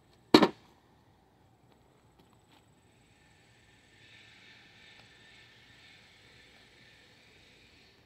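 A single sharp, loud knock of wooden beehive equipment being set down or bumped together, about a third of a second in. From about halfway on, a faint rubbing sound as the wooden hive box is worked into place on the box below.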